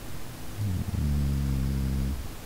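A man's voice gives a short sliding sound, then holds a low steady hum for about a second, a drawn-out 'mmm' filler. It stops abruptly.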